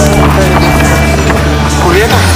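Loud dance music with held low bass notes under a dense, busy mix.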